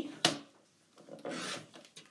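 Fiskars sliding paper trimmer cutting a sheet of patterned paper. There is a sharp click about a quarter second in, then a short rasping slide as the blade carriage runs down the rail through the paper.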